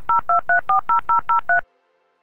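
Telephone touch-tone (DTMF) keypad beeps: a quick, even run of about nine to ten short two-tone dial beeps, about six a second, each a different key. They stop abruptly about one and a half seconds in.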